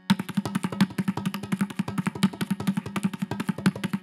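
Mridangam played solo in a Carnatic thani avartanam in Adi tala: a fast, dense run of hand strokes, ringing at the drum's tuned pitch, after a brief break right at the start.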